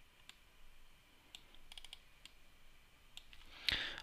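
Faint, scattered computer mouse clicks, with a quick run of several about halfway through.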